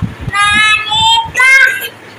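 A toddler's high-pitched sing-song voice chanting her lesson, in three short rising-and-falling phrases, the way a small child recites the alphabet (alif, ba) from a Qaida primer.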